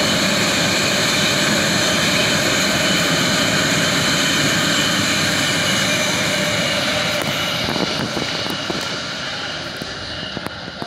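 BART legacy-fleet train passing at speed: loud rushing rail noise with several steady high-pitched whining tones, fading over the last two seconds or so as the train moves away.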